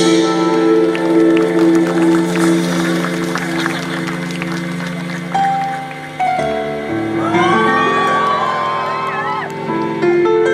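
Live band playing an instrumental passage: held keyboard and electric guitar chords over bass, changing chord about six seconds in, with gliding, bending lead lines after that.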